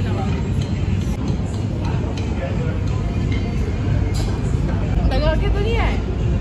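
Restaurant ambience: a steady low rumble under background voices and chatter, with a voice speaking clearly near the end.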